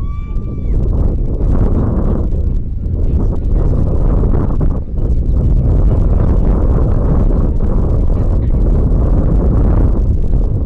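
Wind buffeting the camera microphone: a loud low rumble that surges and eases throughout. A brief high held note sounds at the very start.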